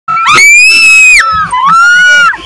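Two loud, shrill, high-pitched screams from a person close by. The first rises in pitch and is held for about a second. The second starts near the end.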